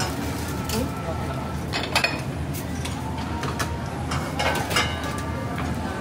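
Restaurant kitchen at work: a steady noise from the lit gas range, with metal pans and utensils clinking and knocking a few times, around two seconds in and again near the five-second mark.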